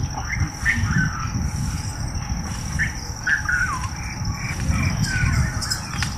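Scattered short bird calls, a few sliding down in pitch, over a steady low rumble and a thin high-pitched whine.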